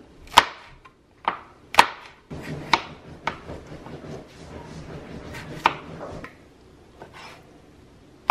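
Chef's knife chopping cucumber and tomato on a cutting board: sharp, irregular knocks of the blade striking the board, about one a second.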